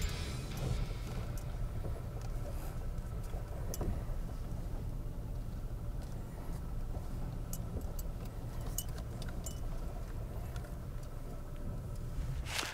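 Pickup truck engine running at low speed as the truck drives slowly across leaf-covered ground towing a kayak trailer, a steady low rumble with a few scattered clicks.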